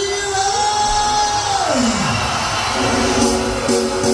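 A man's voice holds a long high sung note, then slides steeply down in pitch about two seconds in. A backing track with steady sustained notes follows.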